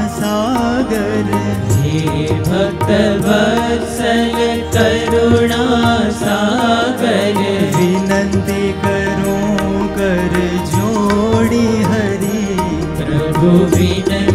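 Indian devotional bhajan music: a harmonium holds a steady sustained drone while a sitar and a voice carry a gliding, ornamented melody with many bends in pitch.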